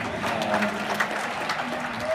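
Concert audience clapping, with a few cheers mixed in.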